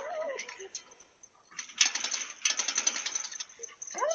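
Motorized garage door closing: the opener and door run with a rapid clicking rattle that starts a bit over a second and a half in.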